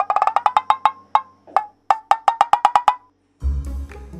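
Comic wood-block ticking sound effect: a fast run of sharp pitched taps, a couple of single taps, then a second fast run. After a brief gap near the end, a music cue with a deep bass note comes in.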